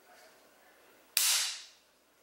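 A 3D-printed PLA+ part snapping as pliers break a ring off it: one sharp crack a little over a second in. It snaps right along a single layer line, the sign of poor layer adhesion from untuned stock print settings.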